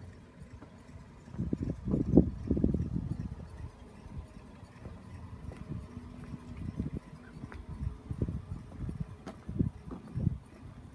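Footsteps on the ground, heard as irregular low thuds, with a louder rumbling stretch from about one and a half to three and a half seconds in.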